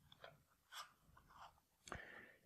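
Near silence, with a few faint, brief clicks and rustles of a cardboard matchbox and string being handled.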